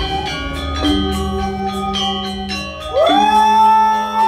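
Balinese gamelan playing, with bronze metallophones ringing in changing notes. About three seconds in, a high voice slides up and holds one long note.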